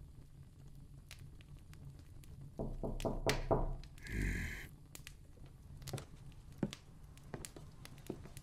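Knocking on a wooden door: a quick series of raps about three seconds in, then a short rasping noise and a few faint single taps.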